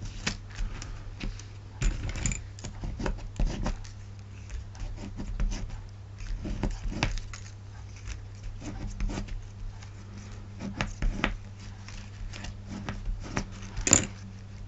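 Irregular rustling, tapping and scraping of card stock being handled and pressed down on a table, with a sharper click near the end, over a steady low electrical hum.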